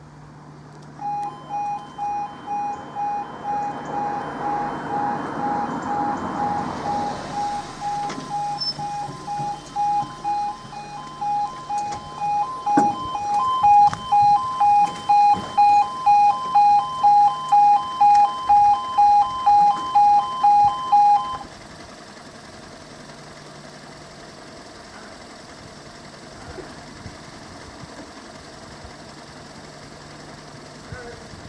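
E2S level crossing warning alarm sounding a loud pulsing two-tone beep, about one and a half beeps a second, as the barriers lower. It starts about a second in and cuts off sharply about two-thirds of the way through, once the barriers are down.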